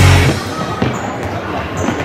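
Rock music cuts off at the very start. It gives way to a football thudding on the floor of a sports hall, echoing, with voices in the hall.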